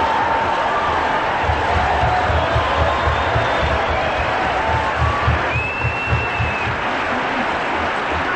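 Large audience applauding and laughing in response to a joke: a steady wash of clapping with voices laughing through it.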